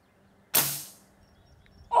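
A single shot from a .22 pre-charged pneumatic air rifle about half a second in: one sharp pop that fades out within about half a second.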